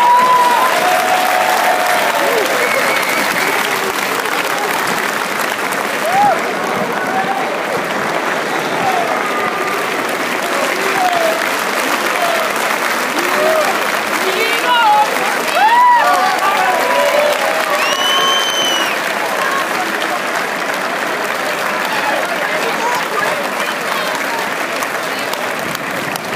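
Crowd applauding steadily, with scattered shouts and voices over the clapping.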